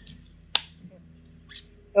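A pause in the talk: a faint low hum with two sharp, short clicks about a second apart, then a voice starts at the very end.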